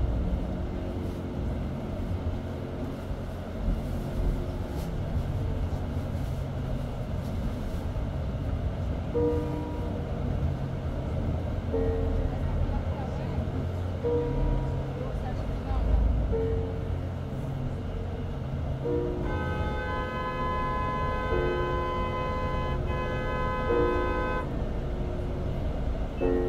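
Vehicle engine and road rumble heard while driving through city traffic, under soft background music with a few scattered notes. About two-thirds of the way in, a loud steady high tone sounds for about five seconds with a brief break in the middle.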